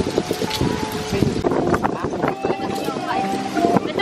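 People chatting indistinctly in the background, with voices coming and going over a steady outdoor noise.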